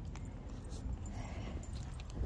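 Faint handling sounds of a leather stirrup strap and a metal stirrup iron being taken in hand on a saddle: a few light clicks over a low rumble.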